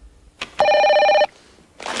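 A telephone ringing: one short ring of steady tones starting about half a second in and cutting off abruptly, just after a faint click.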